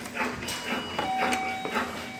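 Electrolux LTD15 washing machine control panel beeping as its buttons are pressed: a few short electronic tones at different pitches, some overlapping.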